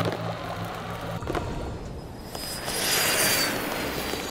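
Cartoon sound effects of an improvised fuel cell blowing a door open: a steady electrical hum that cuts off about a second in, then a swelling rush of blast noise that peaks near three seconds with a faint high whine over it.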